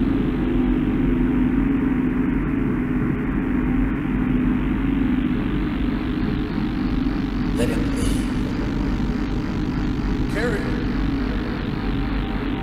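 A steady low rumbling drone, with two short hissy sounds about eight and ten and a half seconds in.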